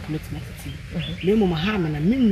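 A woman speaking, with a brief thin high chirp, likely a bird, about a second in.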